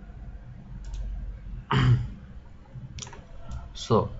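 A few light computer mouse clicks, with a short vocal sound, an "uh" or breath, about halfway through and a spoken "So" at the very end.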